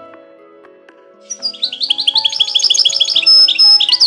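Soft music with sustained notes, over which, from about a second in, a songbird sings a quick run of repeated high chirps, several a second, closing with a couple of held notes and a falling one.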